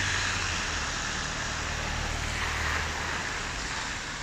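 A car driving past on a wet road: tyres hissing on the wet surface over a low engine hum that slowly fades away.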